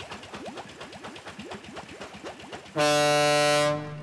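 Cartoon boat pulling away with a quick puttering, then one loud, steady blast of the boat's horn lasting about a second near the end.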